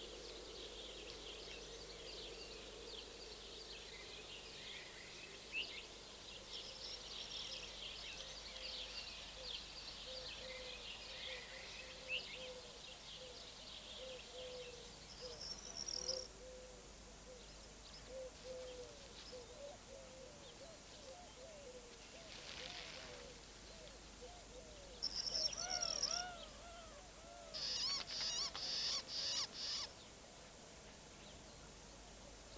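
Wild birds calling: many high chirps and trills through the first half, and a lower call repeated in short notes through the middle. Louder, sharp, rapid chirps come near the end.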